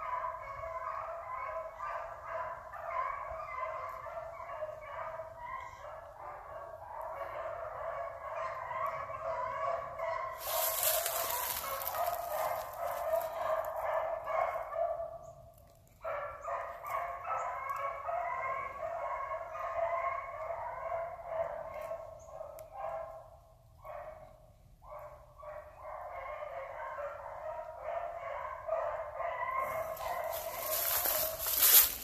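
A pack of hounds baying and bawling continuously as they run a track through the woods, many voices overlapping. The cry fades almost out twice, about halfway through and again a little later, and a few seconds of rushing noise cover it about ten seconds in.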